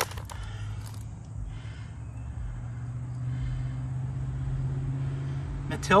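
A motor vehicle going by, heard as a steady low drone that grows louder through the second half.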